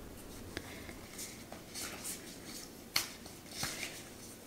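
A deck of silk-matt laminated Elemental Wisdom Tarot cards being shuffled by hand: soft sliding and rustling of the cards with a few short clicks, the sharpest about three seconds in.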